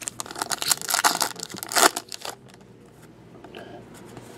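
Foil trading-card pack wrapper being torn open and crinkled, a dense run of rustling for about two seconds, then much quieter.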